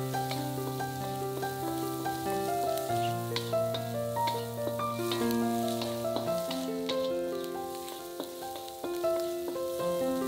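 Mushrooms and scrambled egg sizzling in a wok as a spatula stirs them, with scattered clicks and scrapes of the spatula on the pan. Background music with held notes plays alongside.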